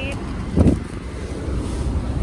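A steady low rumble with one dull thump about half a second in: handling noise from a hand-held phone being swung around inside a car.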